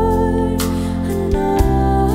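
A woman singing a slow worship song into a microphone over soft sustained instrumental accompaniment. She holds a note, then moves to a lower one about one and a half seconds in.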